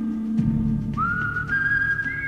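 Background music with a whistle-like lead melody of long held notes; about halfway through, a high note slides up and holds.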